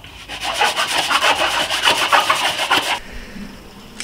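A pallet-wood plank being rubbed by hand with an abrasive, in quick repeated back-and-forth strokes that stop about three seconds in.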